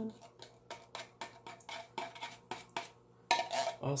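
Metal spoon scraping and clinking inside a can of condensed cream of mushroom soup, scooping out the thick soup. A quick, irregular run of clicks and scrapes, several each second, for about three seconds.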